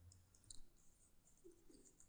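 Near silence with a few faint clicks of a computer mouse, about half a second in and again near the end.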